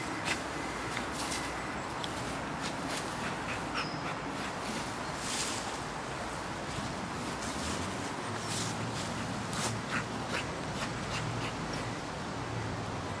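Dogs moving about in woodland: irregular rustling and footfalls over a steady outdoor background hiss, with one brief high chirp about four seconds in.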